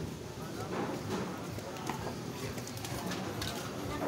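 Busy market-street ambience: background chatter of passers-by with scattered footsteps and small clicks over a low steady hum.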